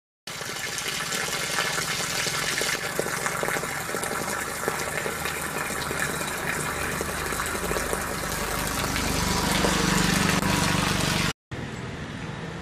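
Water pouring in a steady stream from the open end of a plastic pipe and splashing. It grows a little louder towards the end, then cuts off suddenly just before the end.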